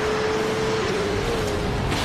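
Film action-scene soundtrack: a loud, steady rushing noise, with a single held tone over the first second and a half.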